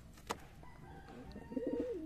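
A pigeon gives a short coo in the second half, after a single faint click about a third of a second in.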